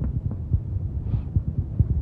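Irregular low knocks and thuds over a steady low hum on an old lecture recording.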